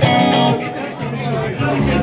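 Live acoustic and electric guitars: a strummed chord rings out at the start, and low bass notes join near the end.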